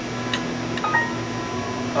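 Steady background hum and hiss of room noise, with a faint click about a third of a second in.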